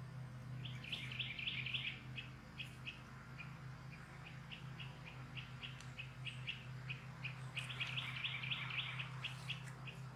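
A small bird chirping in quick runs of short, high notes, thickest about a second in and again near the end, over a steady low hum.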